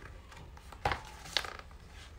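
A page of a picture book being turned by hand: two short sounds about half a second apart.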